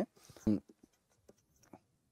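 Faint, scattered ticks and taps of a stylus writing on a pen tablet. A single louder soft thump comes about half a second in.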